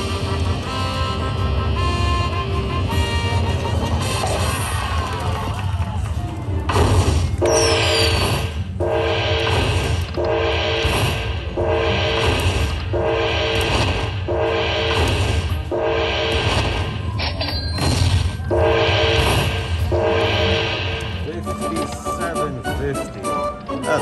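Aristocrat Dragon Link slot machine playing its electronic bonus music after the hold-and-spin bonus has finished. At first it is shifting held tones, then from about seven seconds in a chime figure repeats roughly once a second. Near the end rapid ticking starts as the win begins counting up.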